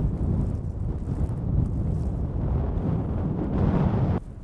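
Wind buffeting the microphone outdoors: a steady low rumble with no other clear sound.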